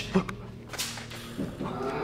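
Two sharp cracks, the first just after the start and the second just under a second in, followed near the end by a steady low hum.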